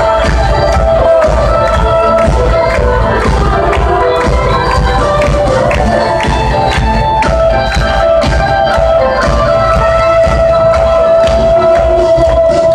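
A live band playing on stage through a concert sound system, heard loud from the audience: held melodic notes over heavy bass and a steady percussion beat.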